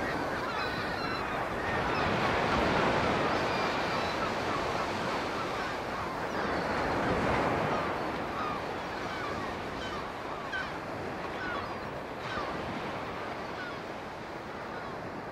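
Steady rush of churned sea water from a boat moving over the sea, easing slightly toward the end, with short faint bird calls scattered through it.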